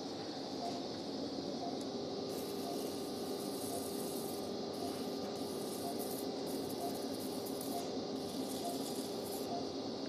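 Operating-room background noise with faint, evenly spaced short beeps from a patient monitor. A high hiss joins in about two seconds in and comes and goes in short stretches.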